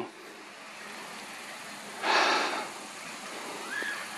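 A single breathy exhale, like a sigh, about two seconds in, over faint steady background hiss.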